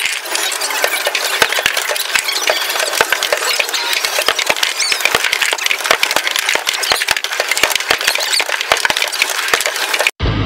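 Skee-ball balls clattering up the lanes and dropping into the scoring rings: many sharp knocks and clacks throughout, over the steady electronic din of an arcade.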